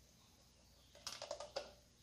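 Near silence, then about a second in a quick run of small hard clicks and rattles, lasting under a second, as the outboard's fuel filter is worked out of its plastic mounting bracket.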